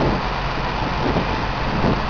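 Excavator's diesel engine running steadily with a constant low hum, no revving.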